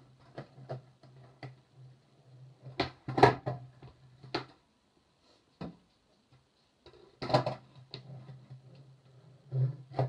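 Skateboard clattering on a hard concrete floor: sharp clacks of the board hitting the floor, loudest about three seconds in and again about seven seconds in, with a low rumble running between them.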